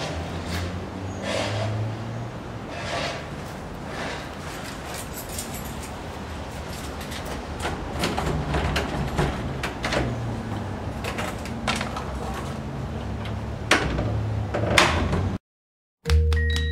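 Quiet location sound with a steady low hum and a few short rustles, then scattered sharp knocks on a wooden door, the two loudest about a second apart near the end. The sound cuts off suddenly just before the end.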